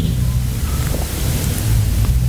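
Steady hiss over a low rumble: the background noise of the lecture recording, about as loud as the speech around it.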